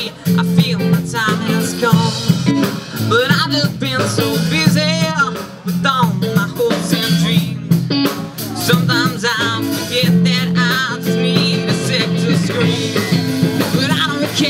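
A live rock band playing loudly through a PA: electric guitars and a drum kit, with a wavering pitched lead line on top.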